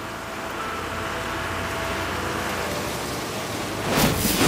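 A rushing, rumbling sound effect for the bus's magic swells steadily, with faint music underneath. A louder whooshing surge begins right at the end.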